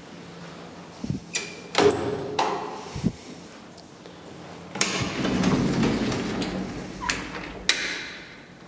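An old elevator's metal landing door being unlatched and opened: latch clicks, a short metallic ping and a loud bang, then a scraping rumble lasting about two seconds, ending in a couple of clicks.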